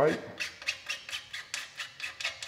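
A small anti-seize-coated plug being turned tight into a threaded port on a titanium exhaust pipe. It makes a quick run of small scratchy clicks, about six a second.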